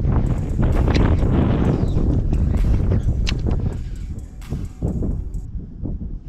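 Wind rumbling on the camera microphone with a string of knocks and clatter from handling and movement on the boat deck, easing off after about four seconds.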